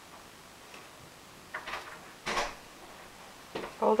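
A rabbit tugging at a roll of toilet paper: two short bursts of paper rustling and tearing, about a second and a half and two and a quarter seconds in.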